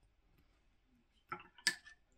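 Quiet room, then two short taps about a second and a half in, the second the louder, as a paintbrush is set down on the table.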